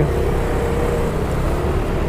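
Yamaha Mio i 125 scooter riding at an even pace: its small single-cylinder engine running steadily with a faint hum, under steady wind and road noise.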